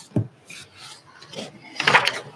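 Rubbing and rustling handling noises close to the microphone, with a low thump just after the start and a louder scraping rustle near the end.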